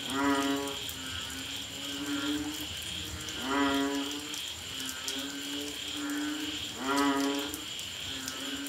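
Banded bullfrogs (Asian painted frogs) calling: three loud, low, drawn-out calls about three and a half seconds apart, each swooping up in pitch at its start, with fainter frogs calling in between. A steady, pulsing high-pitched chorus runs underneath.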